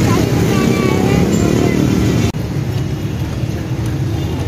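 Key duplicating machine running, its motor-driven cutter cutting a copy of a key from a blank. The sound steps down a little about two seconds in.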